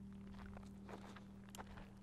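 Faint footsteps on a dirt path, a few soft scattered steps over a low steady hum.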